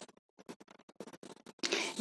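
A quiet pause in a woman's speech, broken by a few faint short clicks.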